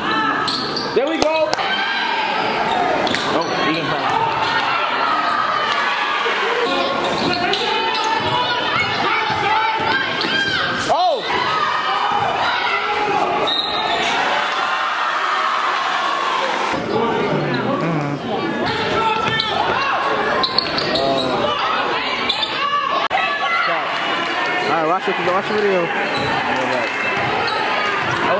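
Basketball game sound in a large gym: the ball bouncing on the hardwood court and a steady din of many voices calling and talking throughout.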